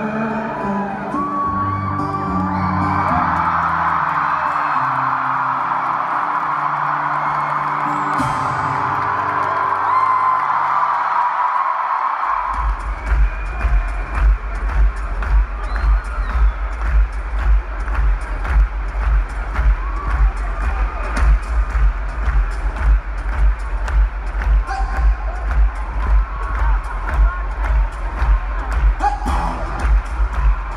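Live arena concert heard through a phone microphone: a song's last low notes under a crowd cheering and whooping. About twelve seconds in, the cheering fades and a steady low thumping beat starts, about two beats a second, over the amplified PA.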